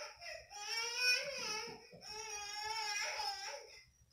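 A baby crying: two long, wavering wails with a short break between them.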